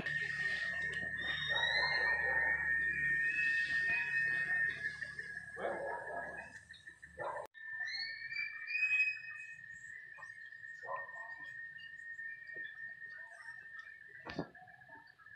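Animal calls at a zoo enclosure: short chirping calls that glide up and down over a steady high-pitched tone, with a few rougher, noisier calls in the first half. The sound changes abruptly about halfway through.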